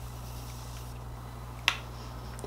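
Faint hiss of setting spray misted from a can onto the face for about the first second, then a single sharp click near the end, over a low steady hum.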